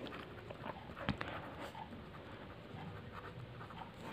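Faint scratching of a pen writing on a paper notebook page, in short strokes, with one sharper click about a second in.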